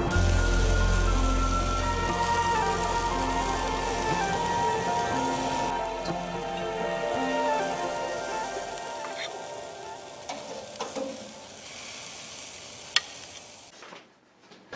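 Ribeye steak sizzling over hot charcoal on a grill grate, a steady hiss, under background music that fades out over the first half. A few sharp clicks in the second half come from metal tongs turning the steak on the grate.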